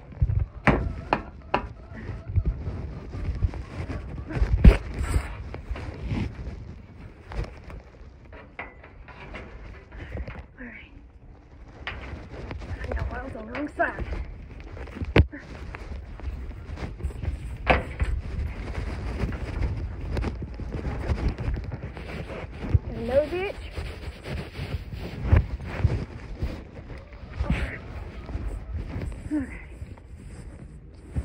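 Wind buffeting an action camera's microphone as a low, steady rumble. Irregular knocks and clicks come from the camera being handled and bumped as it moves, with a brief murmured voice now and then.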